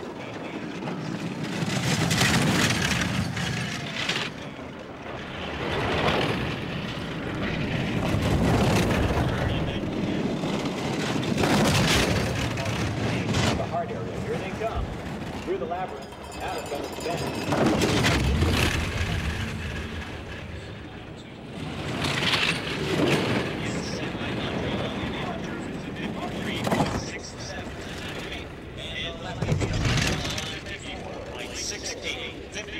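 Four-man bobsled sliding down the ice track, its runners rumbling and hissing in swells that rise and fade every few seconds as the sled passes trackside microphones, with voices in the background.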